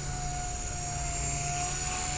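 Blade 180 CFX micro RC helicopter in flight, its 3S 5800kV six-pole brushless motor and rotors giving a steady whine over a low hum, growing slightly louder.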